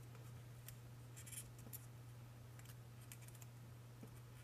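Faint crinkles and light ticks of a small strip of paper being folded and pinched between fingertips, scattered a few times through, over a steady low hum.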